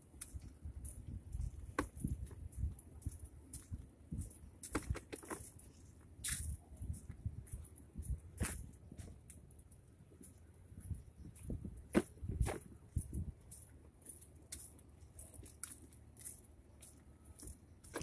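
Faint walking and handling noise from a hand-held camera: irregular knocks and clicks over a low rumble, with a faint steady high hiss.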